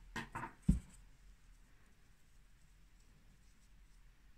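Hands picking up a crochet hook and a small crocheted piece from a tabletop: a couple of light knocks and one dull thump within the first second, then near silence.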